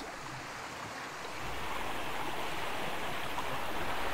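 Small creek water running: a steady rushing and babbling of flowing water that gets a little louder about a second and a half in.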